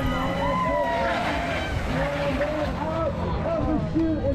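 Spectators shouting and cheering while a pack of mountain bikes rolls close past on pavement. The whir of tyres and drivetrains swells about a second in.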